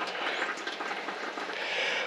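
Hand-pressed coffee maker being plunged, giving a steady hiss of air and coffee forced through the filter that slowly grows louder.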